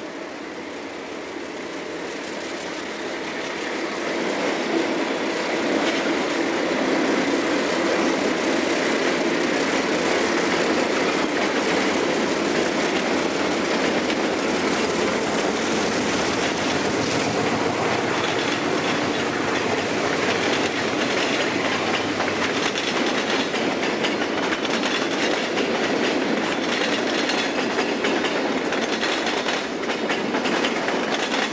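Freight train passing close by behind an Alco diesel locomotive. The sound grows louder over the first few seconds as the locomotive comes up, then holds steady as a long string of boxcars and freight cars rolls past with continuous wheel clatter over the rail joints.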